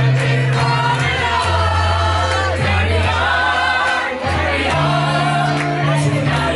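Live piano-bar song: a male singer at the microphone over keyboard accompaniment with long held bass notes, with several voices singing along. Recorded by a camera's built-in microphone, so it sounds roomy and distant.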